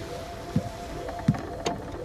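A series of dull low thumps, about one every three quarters of a second, over sustained background music tones.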